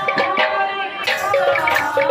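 Live Sambalpuri devotional kirtan music: a woman singing the chant over a double-headed hand drum and small hand cymbals, with sharp drum strokes marking the rhythm.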